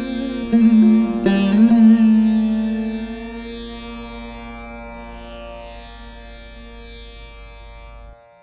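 Veena playing the closing phrase of a Carnatic piece in raga Dharmavathi: a few plucked notes in the first two seconds, then a final note left to ring, fading slowly over about six seconds until it is cut off at the very end.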